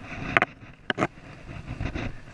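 Three sharp clicks or knocks, one about a third of a second in and two close together around one second, over low rumbling handling noise.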